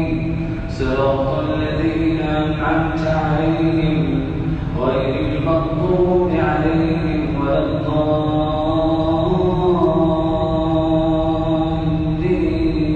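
A man chanting Quran recitation in the melodic tajweed style. He holds long notes that slide up and down in pitch, with brief pauses for breath.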